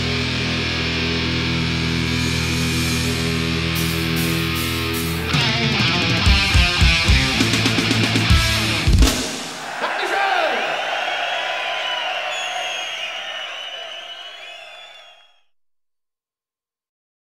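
Live thrash metal band ending a song: a held, ringing distorted guitar chord, then a run of heavy drum and cymbal hits that finishes the song about nine seconds in. Crowd cheering follows and fades out to silence near the end.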